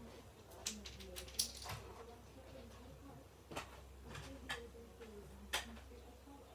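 Scattered light clicks and knocks, about seven of them at irregular intervals, over a faint steady low hum.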